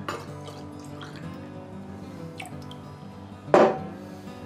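Soft background music held under the scene, with faint water drips and one short, sharp clunk about three and a half seconds in as the wet glass sample jar is handled.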